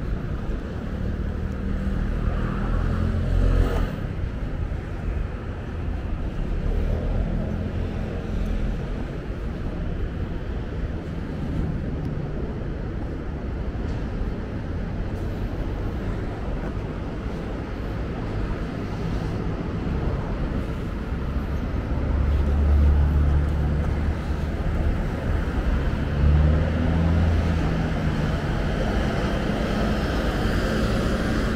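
Road traffic on a city street: the steady noise of passing cars and other vehicles, with a low engine rumble swelling louder briefly near the start and again about two-thirds of the way through.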